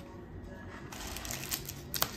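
Paper and plastic covers being pressed and crinkled over the lids of takeaway coffee cups by hand, a rustling that picks up about a second in, with a couple of sharp clicks. Soft background music under it.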